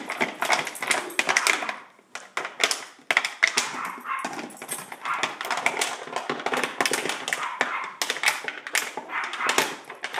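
A dog chewing an empty 2-liter plastic soda bottle, the thin plastic crackling and crunching in quick, irregular bursts, with brief pauses about two and three seconds in.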